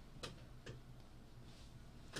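Near silence: low room hum with two faint clicks within the first second.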